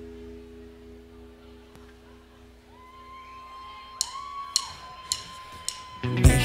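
Quiet sustained tones from a rock band's instruments, a held low chord dying away, then a steady higher tone coming in about halfway. Near the end come four sharp, evenly spaced clicks about half a second apart, a count-in for the next song.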